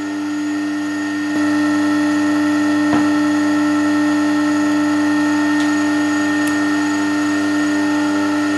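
Steady hum of the motor driving a pull-test rig, slowly raising the load on a girth-hitched sling from about 3 to 6 kilonewtons. The hum steps up slightly in loudness about a second and a half in, and there is a faint click around three seconds.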